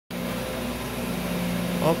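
Steady low machine hum made of several held tones, like an electrical appliance or fan running.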